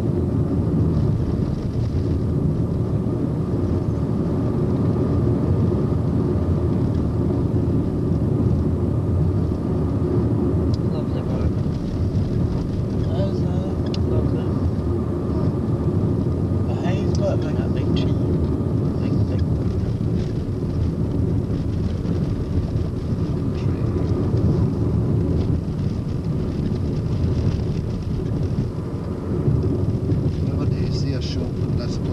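Car cabin noise while driving: a steady low rumble of engine and tyres heard from inside the car.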